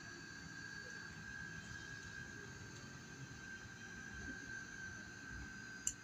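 Small USB-rechargeable neck fan running, its motor giving a steady thin whine over a hiss of blown air. A sharp click comes near the end.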